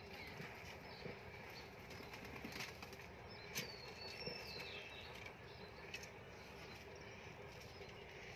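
Faint rustling background noise with a few soft clicks, and a faint, high, descending bird chirp about three and a half seconds in.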